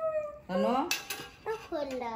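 A person's voice in short, drawn-out phrases with strongly sliding, sing-song pitch, about half a second in and again near the end, without clear words.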